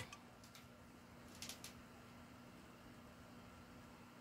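Near silence: faint room tone with a low steady hum, and a few faint rustles of clothes and plastic hangers being handled at the rack, the clearest about a second and a half in.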